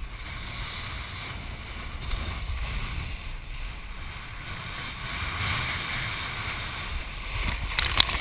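Wind rushing over a head-mounted action camera and water hissing under a kiteboard riding at speed through chop, with a louder splash of spray hitting the camera near the end.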